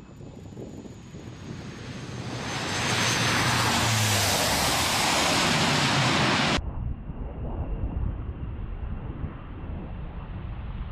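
C-130J Super Hercules's four turboprop engines at close range during landing: a high turbine whine over engine noise that builds into a loud rushing roar as the aircraft rolls along the wet highway. The roar cuts off suddenly about two thirds of the way in, leaving wind buffeting the microphone over a low rumble.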